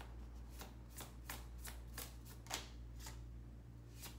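Tarot deck being shuffled overhand: a quick, quiet run of card flicks and slaps, about three a second.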